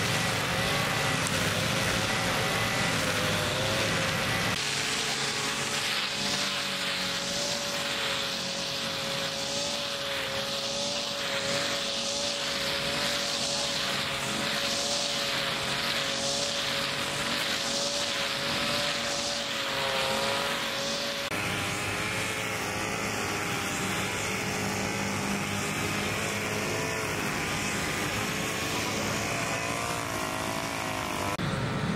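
Engine-powered brush cutter (string trimmer) running steadily at high revs while cutting grass. Through the middle stretch there is a swishing about once a second as the head sweeps through the grass.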